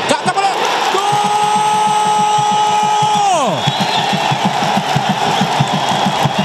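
Stadium crowd cheering a goal over a fast steady beat, with one long held shout of "goal" that starts about a second in, holds for two seconds and falls away.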